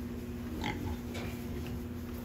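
A young pig grunts briefly twice as it walks through wood-shaving bedding, over a steady low hum.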